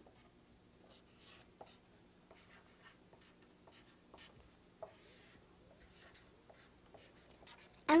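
Felt-tip marker writing numbers on a sheet of paper: a string of short, faint squeaks and scratches as each figure is drawn, with one longer stroke about five seconds in.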